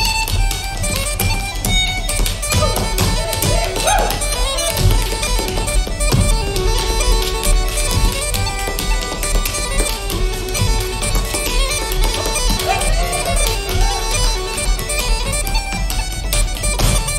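Uilleann pipes playing a fast Irish reel over steady drones, with the rapid hard-shoe steps of a sean-nós dancer clicking on a wooden floor in time with the tune.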